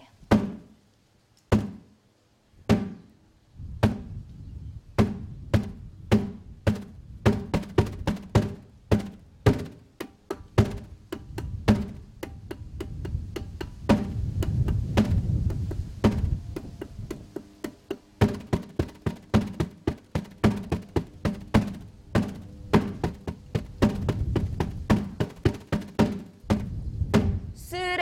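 Taiko drumming on a homemade tire drum: a car tire with a packaging-tape head held by duct tape, struck with wooden sticks. It starts with a few slow single strokes, then goes into a fast, steady rhythm with quicker runs of strokes.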